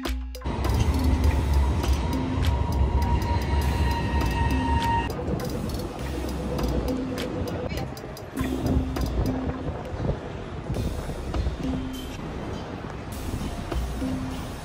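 Background music with a beat over loud city street noise, with a light rail tram running close by and giving a steady whine that stops about five seconds in.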